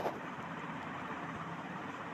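Steady, even background noise of outdoor ambience, with no distinct event in it.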